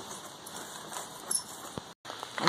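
Faint outdoor background noise with a few light clicks or taps.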